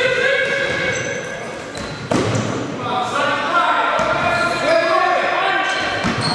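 Basketball being bounced on a sports-hall court amid shouted voices from players and the bench, echoing in the hall, with a sharp knock about two seconds in.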